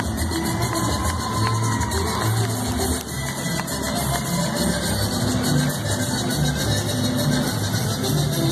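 Polka music playing for a dance, with a steady, bouncing bass line.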